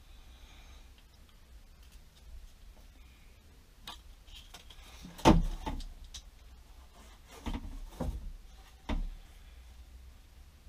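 Broom handle and plastic wall-mounted broom holder knocking against the wall as the handle is fitted into the holder. A light click comes first, then a sharp knock about halfway through, the loudest, and three smaller knocks in the last few seconds.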